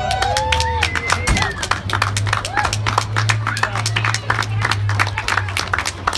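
Onlookers clapping and cheering, with whoops in the first second or two, over a steady low hum.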